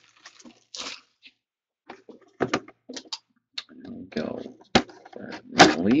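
Clear plastic shrink wrap being pulled off a cardboard box, crinkling in short, irregular crackles, with sharper clicks and taps as the box is handled, one sharp click near the end.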